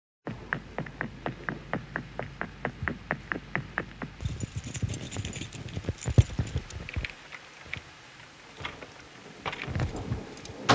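Opening of a jazzy house track: a fast, even tapping about four times a second for the first four seconds, then scattered clatter and hiss, quieter, with a few knocks near the end.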